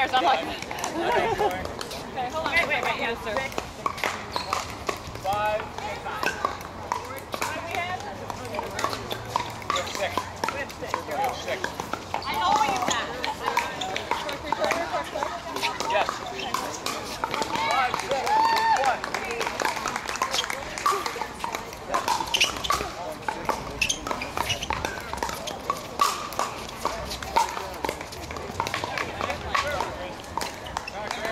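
Scattered sharp pops of pickleball paddles hitting plastic balls on several courts at once, over background voices of players and onlookers talking.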